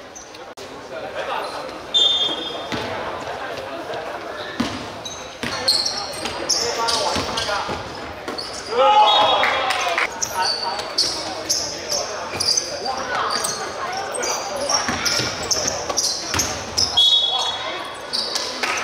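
Basketball game sounds in a large sports hall: the ball bouncing on the court, sneakers squeaking and players calling out, all echoing around the hall.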